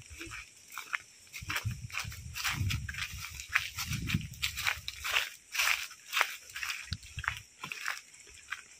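Footsteps crunching and crackling irregularly on dry leaf litter. A few low muffled sounds come between about one and a half and four and a half seconds in.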